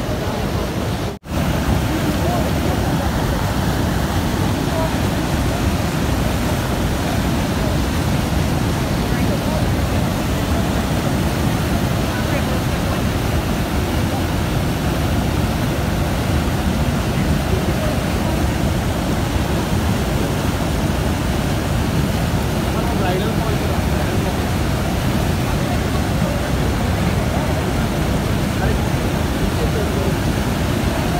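Steady rush of water from the Niagara River rapids and the American Falls, loud and even, with a brief dropout about a second in.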